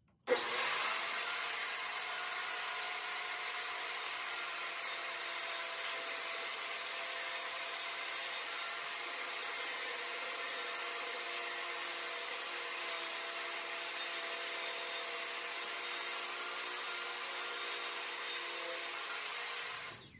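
Portable jobsite table saw running steadily while ripping rough-cut one-by-four boards to a uniform width just under four inches. It is a steady whine with several fixed tones, starting suddenly just after the start and cutting off just before the end.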